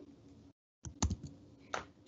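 A few faint, sharp clicks of computer keys in a short cluster, with one more click near the end, after a brief moment of dead silence.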